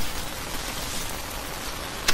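A steady, even hiss with no distinct strikes or tones.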